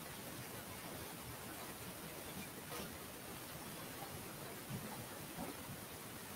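Steady low hiss of static on the live stream's audio, with a few faint soft ticks.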